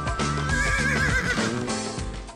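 Music with a horse's whinny over it, a quavering high call lasting about a second.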